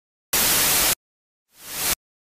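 Two bursts of static hiss from a title-sequence sound effect. The first starts abruptly a little way in, holds steady for just over half a second and cuts off sharply; the second, near the end, swells up and then cuts off suddenly.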